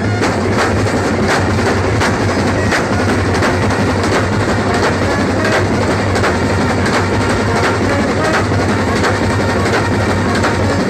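A Kerala band set's drum section: many side drums and bass drums played together in a loud, dense, driving rhythm, with heavy accented strokes coming at a steady pace.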